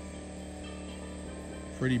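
Portable generator running steadily, a low even hum, with faint insect chirps over it.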